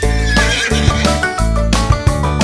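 A horse whinny sound effect in the first part, over cheerful children's-song backing music that plays throughout.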